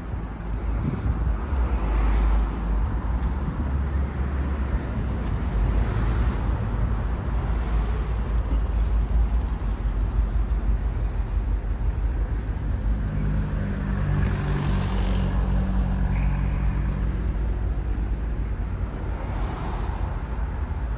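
Road traffic passing on a busy street: a continuous low rumble of engines and tyres. An engine hum holds steady for several seconds past the middle, then fades.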